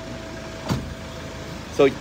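A single short knock about a third of the way in, over a steady background hum; a man's voice starts again near the end.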